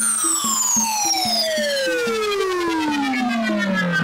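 Electronic music: a synthesizer tone with several overtones glides slowly and steadily downward in pitch, like a falling siren, over a run of short, low pulsing notes.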